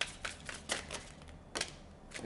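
A deck of tarot cards being shuffled by hand: a run of quick, crisp card slaps that thins out, with a last one about one and a half seconds in.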